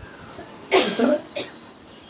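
A man coughs once into the microphone a little under a second in, a short harsh burst with a second catch right after it.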